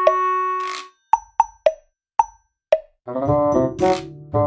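Edited-in soundtrack: a held note of music fades out in the first second, then five short plopping pop sound effects, each dropping in pitch, in otherwise dead silence. Music with a beat starts again about three seconds in.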